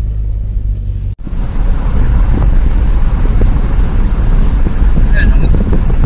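Car driving on a rough gravel road, heard from inside the cabin: a steady low engine hum, then after a brief cut-out about a second in, a louder, continuous rumble of tyres and wind.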